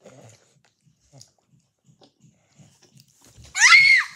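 A child's short, high-pitched squeal that climbs steeply in pitch near the end, after a few seconds of faint soft knocks and rustling.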